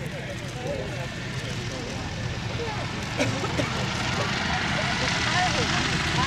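De Havilland DH60X Moth biplane's piston engine and propeller running as it flies low over the airfield, growing louder toward the end.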